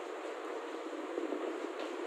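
Chalk on a chalkboard, a few short scratches and taps as letters are written, over steady background noise.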